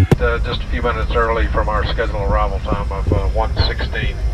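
Airliner cabin noise, a steady low rumble, with a person's voice talking over it throughout.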